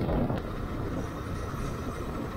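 Motorcycle running steadily on the move, its engine and road noise heard as an even low rumble.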